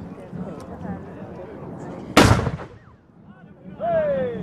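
A single loud black-powder cannon shot about two seconds in, dying away over about half a second, over crowd chatter.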